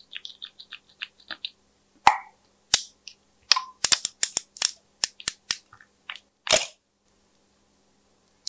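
Small plastic containers and caps handled with acrylic nails, clicking and snapping: light clicks at first, then about a dozen louder, sharp snaps over the next five seconds.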